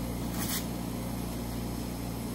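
Steady low machine hum, with a brief papery swish about half a second in as a Kimwipe tissue is pulled from its box.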